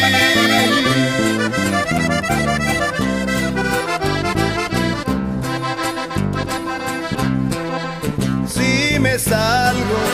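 Norteño band music in an instrumental passage: a button accordion plays the lead melody over a steady, stepping bass line.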